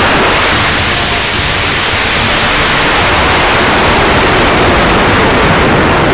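Aerotech G-class model rocket motor firing and air rushing past the body-mounted onboard camera's microphone during the climb: a loud, steady rushing noise that starts suddenly at liftoff.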